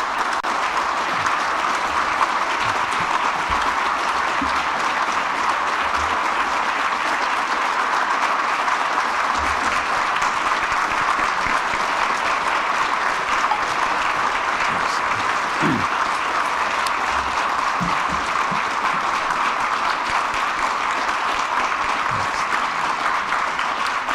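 Audience applauding in a long, even round of clapping that holds steady throughout.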